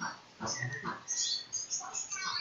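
Faint animal calls: several short sounds about half a second apart, with brief high chirps among them.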